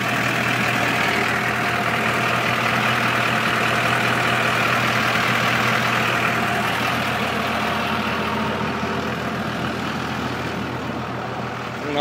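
Diesel truck engine idling steadily, easing off a little near the end.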